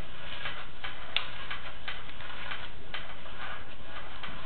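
Sewer inspection camera's push cable being pulled back out of a drain line, giving irregular clicks and ticks, about two or three a second, over a steady hiss, with one sharper click a little over a second in.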